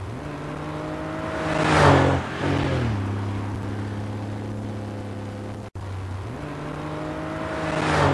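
Car engine sound effect dubbed over toy sports cars: the engine note rises, swells to a loud pass about two seconds in and drops in pitch as it goes by, then runs steadily. After a brief dropout near six seconds the same sequence starts again, swelling to another loud pass at the end.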